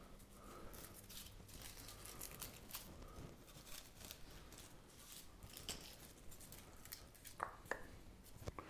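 Faint rustling and small scattered clicks of hands handling a tillandsia air plant and its paper-covered wire on a dried branch.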